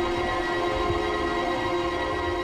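Documentary background score holding one steady sustained chord, a dark, tense drone.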